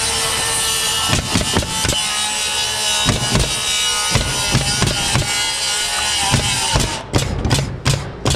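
Power saw cutting, a steady whine with scattered knocks, stopping about seven seconds in, followed by several sharp knocks near the end.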